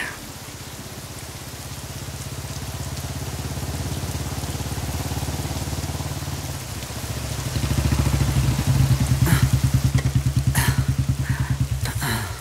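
Motorcycle engine running with a fast, even low beat, growing louder about two-thirds of the way in as it draws up close. Steady rain falls throughout.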